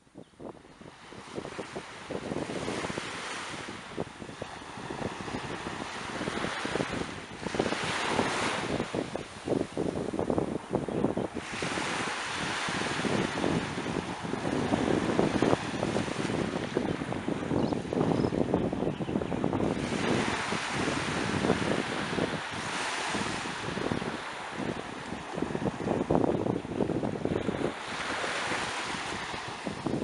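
Sea waves washing in on the shore, surging every few seconds, with gusty wind buffeting the microphone.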